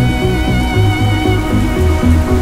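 Dark ambient synthesizer music: long held chord tones over a low bass that pulses several times a second, with a steady rain hiss beneath.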